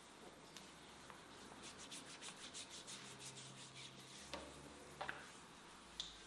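Hands rubbing and kneading oiled skin on a man's upper arm in a massage: faint, soft, closely repeated strokes, with a couple of sharper clicks about four and five seconds in.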